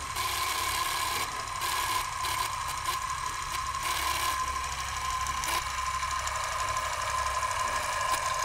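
Old film-projector sound effect: a steady clattering mechanical whir with a constant high hum and crackle, as of a reel running through the gate.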